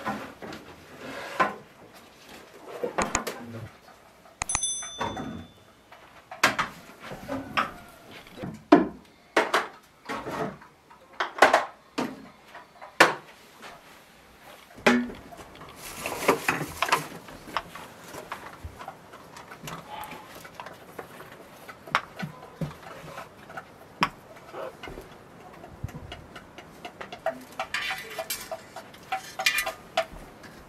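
Kitchenware being handled: dishes, jars and a metal tray knocking and clinking as they are taken down and set on a table, in a string of separate knocks. One clink rings out briefly about four and a half seconds in.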